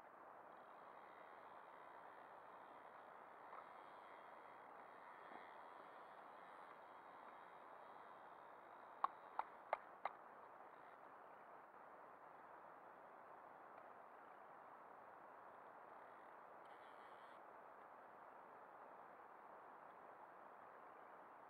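Near silence with a faint steady hiss. About nine seconds in come four quick, sharp clicks, roughly three a second.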